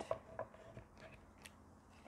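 Faint handling sounds of a wooden beehive frame with wired wax foundation being lifted and turned over on a towel-covered board: a few soft taps and rubs.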